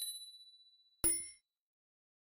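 Subscribe-animation sound effects: a click with a ringing ding that fades over about a second, then a second short bell-like chime about a second in as the notification bell switches on.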